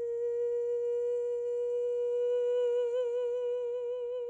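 A woman's voice holding one long, high, wordless note, steady at first, with vibrato coming in toward the end.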